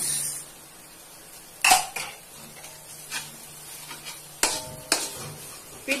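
A fork stirring a sardine filling in a metal wok, scraping the pan and clinking sharply against it a few times, the later clinks leaving a short metallic ring. A brief hiss of bread crumbs pouring into the pan comes at the very start.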